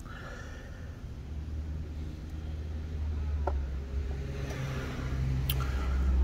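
Low, steady engine rumble that slowly grows louder, with a faint tick or two.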